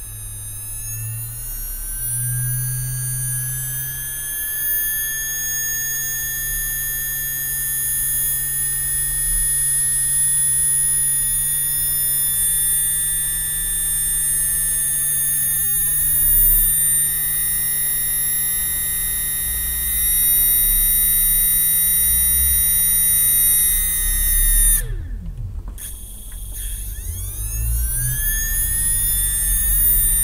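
Hard-drive brushless spindle motor driven by a homemade MOSFET (IRFZ44N) controller board, giving a steady high-pitched electronic whine over a low hum, its pitch creeping slowly upward. About 25 seconds in it cuts out with a falling tone, then comes back with a rising whine as the motor spins up again.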